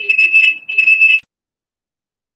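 High-pitched audio feedback squeal on a video-call line, a steady whistling tone that pulses in level and cuts off suddenly a little over a second in, leaving dead silence.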